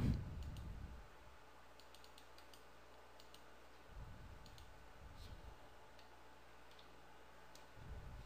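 Faint, scattered clicks of a computer mouse and keyboard, a few single ticks spread over several seconds, with a soft low rumble about four seconds in.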